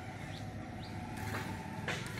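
A steady low mechanical hum, like an engine running, with a few faint short rising chirps in the first second and a couple of brief clicks near the end.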